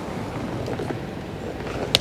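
Steady background hum of the room, with one sharp click near the end.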